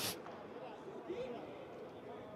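Faint, distant voices over quiet pitch-side ambience of a football match played in a stadium with no crowd.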